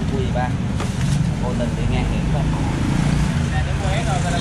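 Street traffic: a steady low engine rumble from passing motor vehicles, with brief snatches of nearby voices in the first second.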